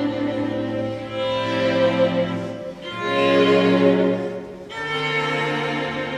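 Orchestral string section, cellos prominent, bowing slow held chords. The chord changes about three times, each held for a second and a half to two seconds.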